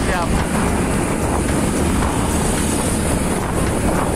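Wind rushing over the microphone of a moving Honda Supra GTR 150 motorcycle, with engine and road noise underneath, steady throughout.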